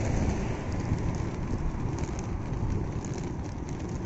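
Steady, low rumbling outdoor background noise with a few faint light ticks.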